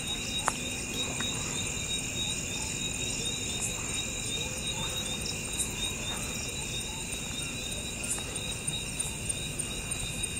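Crickets and other insects trilling steadily, several high-pitched trills layered at once, one of them pulsing, with a single small click about half a second in.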